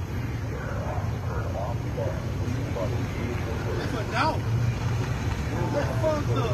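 Faint, indistinct voices of people talking at a distance, in short snatches over a steady low rumble of vehicles.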